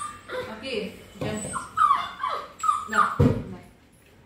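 A puppy whining in several short, high-pitched cries, most of them falling in pitch, as it begs for a treat.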